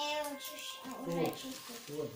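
Voices only: a young child speaking in a sing-song way, with an adult's voice briefly, words unclear.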